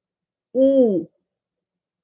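A woman's voice saying one drawn-out syllable, 'ee', the Korean number two, about half a second long with its pitch falling at the end.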